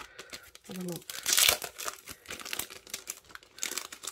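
Clear plastic stamp packet crinkling and crackling as it is handled and pulled open, loudest about a second and a half in, then in scattered crackles.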